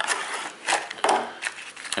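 Plastic packaging and a paper insert rustling and crinkling as they are handled, in several short rustles.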